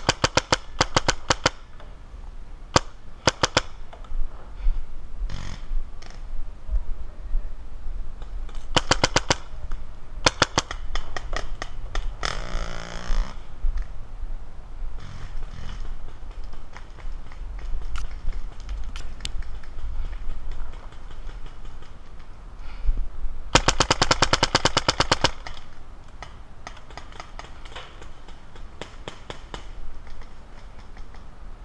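Paintball markers firing in rapid strings of sharp pops, volley after volley with pauses between, some shots loud and close and others fainter; the longest, loudest volley comes about two-thirds of the way through.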